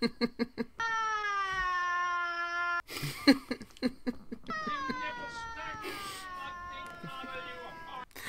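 A small boy wailing in two long, drawn-out cries, the second slowly falling in pitch, with short bursts of laughter before and between them.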